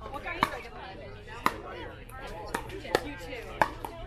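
Pickleball paddles striking a hollow plastic ball during a rally: about five sharp, hollow pops at irregular spacing. Faint voices sound underneath.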